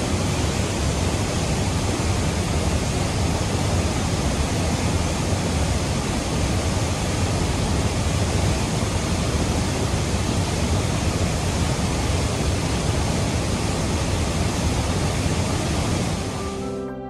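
Mountain stream rushing and cascading over rocks in a narrow gorge: a steady, even rush of white water with a deep low rumble.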